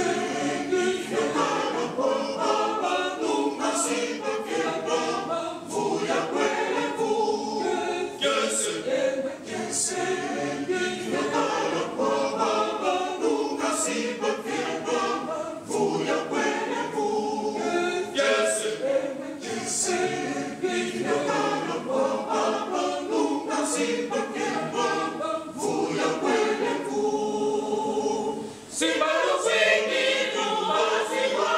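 Mixed choir of men and women singing a cappella, with a brief break between phrases near the end.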